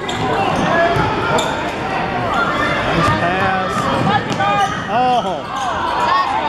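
Basketball being dribbled on a hardwood gym floor, with many short, high sneaker squeaks from the players moving.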